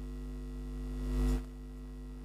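Steady electrical mains hum in the recording, with a brief soft noisy swell about a second in.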